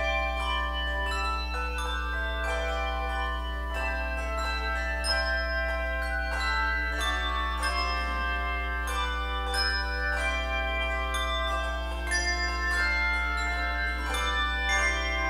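A handbell choir playing a piece, many hand-rung bells struck in overlapping chords with their notes ringing on.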